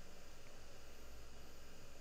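Quiet room tone: a faint, steady hiss with a low hum underneath.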